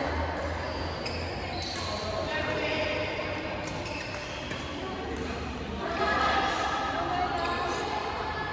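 Badminton rackets hitting a shuttlecock, a few sharp smacks one to two seconds apart, echoing in a large hall, with players talking.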